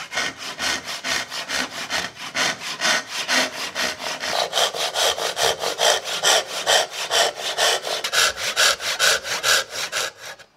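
Japanese-style pull saw cutting into a curly teak board by hand, in quick even strokes about four a second.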